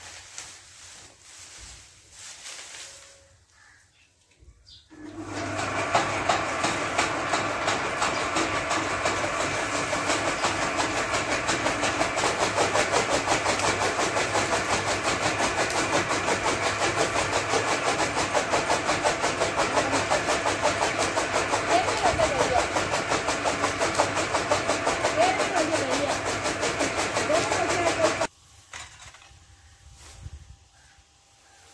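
Powered chaff cutter chopping green fodder as it is fed in: a steady machine whir with a rapid stream of blade chops. It starts about five seconds in and cuts off suddenly near the end.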